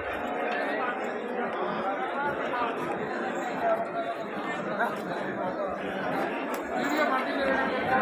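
Several people talking at once, an unbroken babble of crowd chatter with no single voice standing out.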